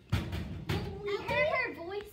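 A few knocks and rattles on grey metal lockers in the first second, followed by a child's voice.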